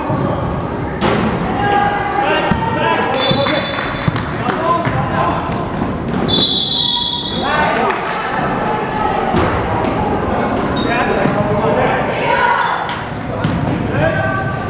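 A basketball game in an echoing gym: the ball bouncing on the hardwood-style floor with scattered thuds, under a mix of players' and spectators' voices calling out. About six and a half seconds in there is a short, steady, high-pitched tone.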